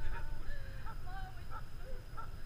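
Wind rumbling on the microphone high up in the open, with faint, short, wavering whistle-like tones scattered through it.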